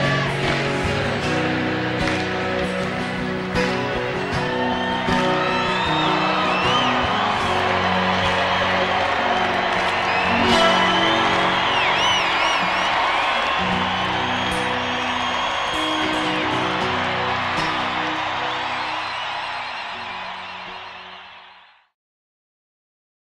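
Rock band playing live with strummed guitars while a concert crowd cheers and whistles, the cheering swelling about halfway through. The recording fades out near the end.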